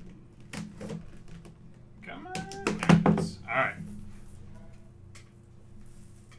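Handling of a cardboard trading-card box: the outer sleeve sliding off and the hinged lid being opened, with light knocks early on and a cluster of sharper knocks about two to three seconds in, the loudest a thump near three seconds. A short rising squeak-like tone comes just before the thump.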